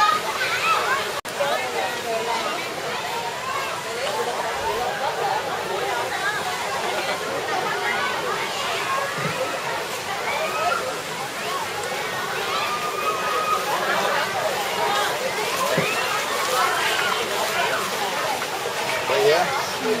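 Crowd of people and children talking and calling at a busy swimming pool, many voices overlapping, over water sloshing and splashing. The sound briefly cuts out about a second in.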